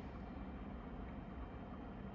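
Faint steady low hum of an Elegoo UV resin curing station running a cure cycle, its turntable rotating the printed parts.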